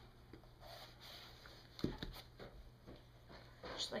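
Scissors cutting through the packing tape along the edge of a cardboard box, with faint scratching, a soft thump about two seconds in and a few light clicks.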